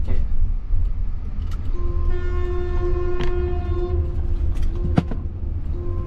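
Steady low road and tyre rumble inside the cabin of a Jaguar I-Pace electric car driving. About two seconds in, a single steady horn-like tone sounds for about two seconds over it, then lingers faintly, with a few light clicks.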